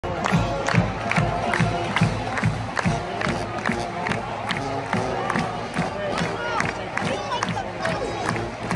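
Packed stadium crowd cheering and shouting over a steady beat of about two to three hits a second.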